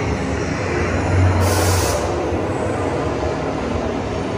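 Test Track ride vehicle running along its track through an indoor show scene, a steady loud rumble with a low hum. About a second and a half in comes a brief hiss.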